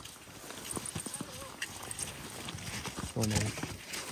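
Quiet outdoor sound with scattered soft clicks, and a short murmured voice about three seconds in.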